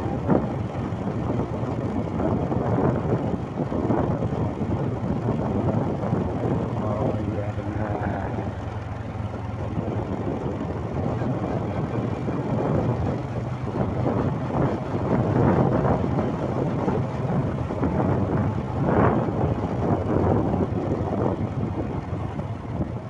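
Motorcycle engine running at a steady cruising pace, with road and wind noise.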